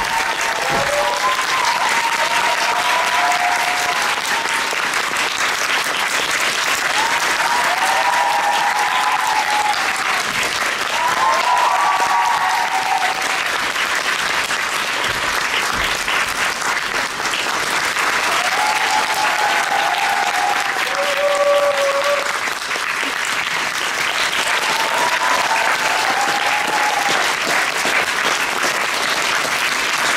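Theatre audience applauding steadily through a musical's curtain call, with a few brief high-pitched calls rising above the clapping now and then.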